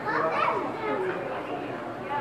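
Children's voices and background chatter, with no clear words.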